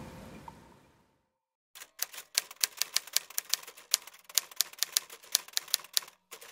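Music fading out in the first second, a short silence, then typewriter keys clacking in quick, uneven strokes.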